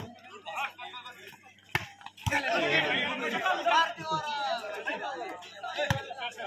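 Volleyball being struck by hands and forearms, four sharp slaps: one at the start, two around two seconds in, and one just before the end. Spectators talk and call out over and between the hits, busier from about two seconds in.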